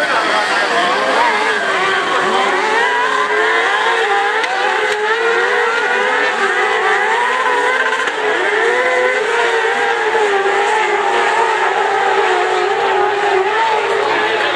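Several crosscart engines running at once, their pitches rising and falling and overlapping as the carts accelerate and ease off through the bends of a dirt track.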